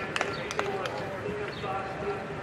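Applause dying away to a few scattered hand claps in the first second, over faint background voices.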